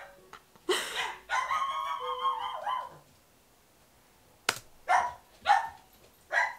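Dog barking: a few barks early on, then a run of short barks about half a second apart near the end.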